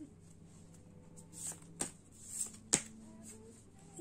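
Oversized tarot cards being shuffled by hand: soft rustling with two sharp snaps of the cards about a second apart, the second one louder. The large cards are hard to shuffle.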